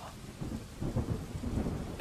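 Rain falling steadily with a low, rolling rumble of thunder that builds from about half a second in.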